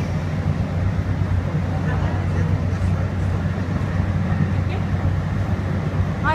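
DART light rail car heard from inside the passenger cabin while running: a steady low hum and rumble.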